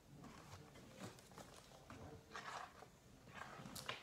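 Near silence: room tone with a few faint rustles and small clicks from a hardcover picture book being held up and moved.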